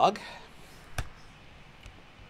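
A single sharp click about a second in, followed by a much fainter tick near the end, from input at the computer while code is being edited.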